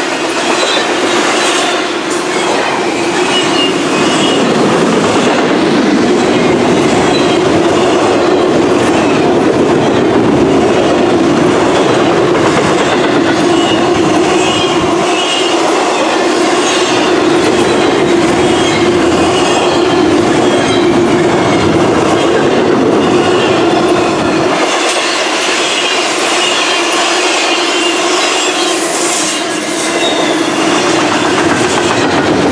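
Double-stack intermodal well cars rolling past close by: a steady, loud rolling noise of steel wheels on the rails, with a thin high wheel squeal that comes and goes.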